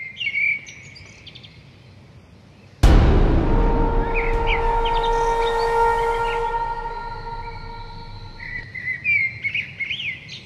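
Birds chirping. About three seconds in, a sudden loud strike sets off a ringing tone that fades slowly over about six seconds, and the chirping returns near the end.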